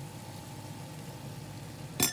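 A steady low mechanical hum with a faint, thin high tone above it, and a sharp click at the very end.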